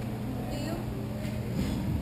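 Hockey rink ambience: distant players' voices over a steady low hum, with a few faint clicks in the second half.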